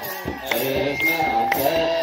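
Children's choir chanting an Ethiopian Orthodox wereb hymn in sustained, gliding lines, over a regular beat about twice a second.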